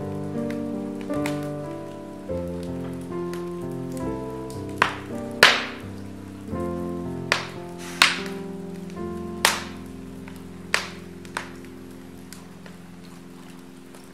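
Wood fire crackling in a fireplace, with a run of sharp pops in the middle, the loudest about five seconds in. Under it, soft piano music with held notes fades away.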